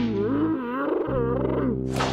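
Cartoon larva characters letting out a long, warbling wail with their mouths wide open, the pitch wobbling up and down, over sustained background music. A sudden noisy hit comes near the end.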